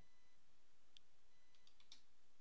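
A few faint computer keyboard clicks, one about a second in and a quick cluster near the end, over quiet room tone.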